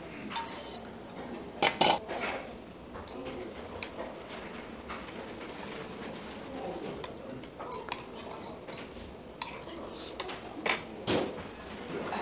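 Metal spoon clinking and scraping against bowls as rice is scooped from a stainless steel rice bowl into an earthenware pot of soup and stirred in. Scattered sharp knocks, the loudest about two seconds in.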